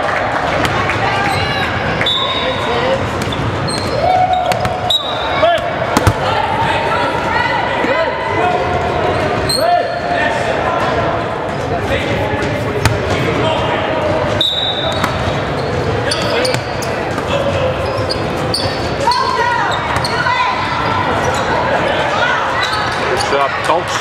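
Basketball game in a gym: a ball bouncing and thudding on the court, with spectators' voices and shouts echoing through the hall throughout.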